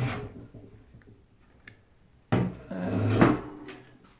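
Wooden wardrobe door swung open at the start, then, a little over two seconds in, a longer, louder rubbing and bumping as the door is handled and shut.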